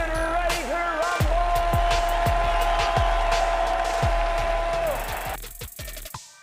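Dramatic intro music with regular bass-drum hits under a ring announcer's long drawn-out call, one held note lasting several seconds. It cuts off about five seconds in.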